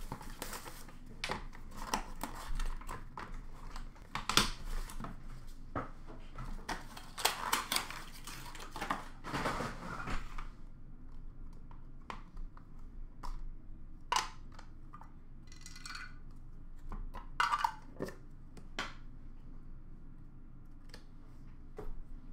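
Cardboard box and packaging being opened and handled: dense rustling, scraping and clicking for about ten seconds, then only scattered taps and short rustles as pieces are moved about.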